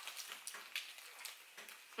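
A person chewing a mouthful of sub sandwich: faint, with scattered small crackly clicks.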